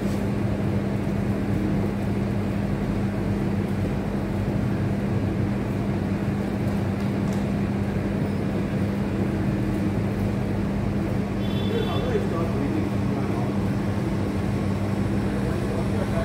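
A steady low machine hum with a constant drone, unchanging in level, like a motor or compressor running nearby.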